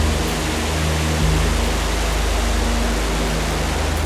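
Rocket engine of an ICBM at launch: a dense, steady rushing noise, heard over low held notes of background music.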